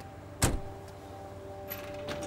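A single heavy thump about half a second in, over faint steady held tones.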